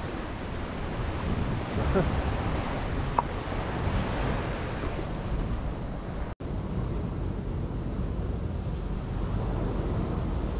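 Wind buffeting the microphone over sea waves washing against rocks, a steady rushing noise, with a short laugh about two seconds in.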